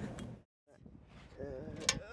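Outdoor background noise that cuts off abruptly to a moment of dead silence at an edit. Then a voice gives a hesitant "uh", and a single sharp click comes near the end.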